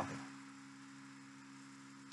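Faint steady electrical hum with low hiss: room tone of the recording.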